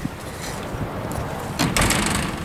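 Metal landing door of a Garaventa outdoor platform lift being pushed shut: a click at the start, then a short burst of knocks and rattles about a second and a half in. The door will not latch and stay shut.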